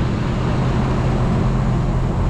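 Steady low mechanical hum and rumble with a few constant low tones, unchanging throughout.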